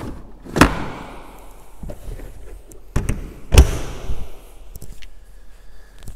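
A few sharp knocks and thuds as a motorhome's cassette toilet tank is handled at its exterior service hatch, the loudest about three and a half seconds in.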